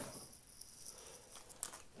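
Plastic-wrapped trading card hanger packs rustling and crinkling as they are picked up and handled, with a few light clicks near the end.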